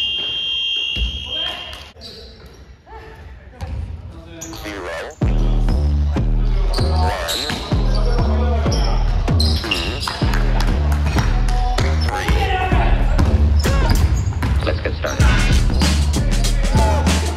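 Basketball practice in a large gym: a ball bouncing on the hardwood and players' voices, with a steady high tone near the start. About five seconds in, background music with a heavy bass line comes in suddenly and covers the court sounds.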